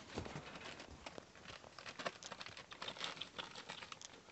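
Newspaper rustling and crinkling under Zuchon puppies as they scramble and wrestle on it, many small irregular crackles.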